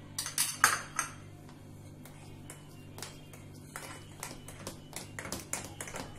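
A spoon clinking against a bowl and a steel mixer jar. A few sharp clinks come in the first second, then a run of lighter taps in the second half as the batter is stirred.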